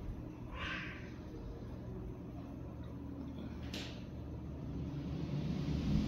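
Steady low hum of a room fan, with two brief breathy hisses, one about half a second in and a sharper one just before four seconds.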